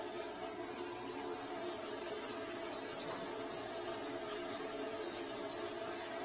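Water running steadily into a drain to test it after the blockage was cleared, over a low steady hum.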